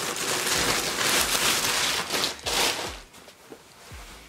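Plastic packaging bag crinkling and rustling as it is handled and opened, dying away about three seconds in.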